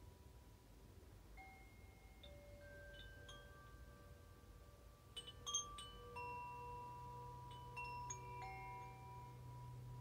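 Chimes ringing faintly: single notes struck now and then, each ringing on for a few seconds. The notes grow more frequent a little past halfway, where several strike together at the loudest moment, over a low steady hum.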